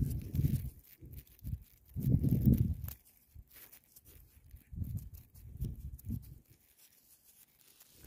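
Thumb rubbing soil off a freshly dug metal button, heard as a few muffled bursts of rubbing and crumbling dirt with quiet gaps between.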